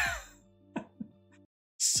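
A man's laughter fading out, then two short faint throat sounds and a sharp breath in before he speaks again.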